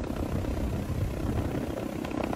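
Steady low rumble of a helicopter's engine and rotor, heard from inside the aircraft during an overflight.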